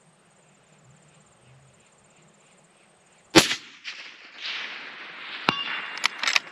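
A single rifle shot about three seconds in, followed about two seconds later by a short metallic ring from a steel gong struck downrange at about 500 m.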